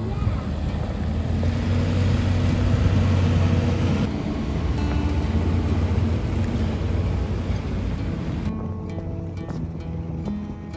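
A converted box truck driving across a gravel lot: a steady low engine rumble with tyre noise on gravel, under background music. The vehicle noise fades out about eight and a half seconds in, leaving the music.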